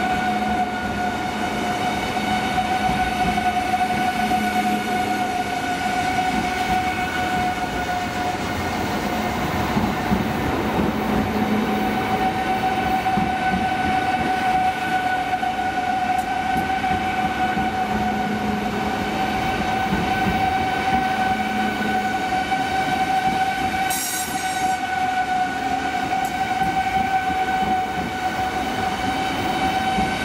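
Eurostar high-speed electric train moving slowly alongside the platform, its electrical equipment giving a steady high-pitched whine over a low rumble. A brief high hiss comes once, near the end.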